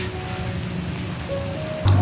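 Vegetables and pineapple sizzling in a hot wok, a steady frying hiss under background music. The sound gets louder near the end.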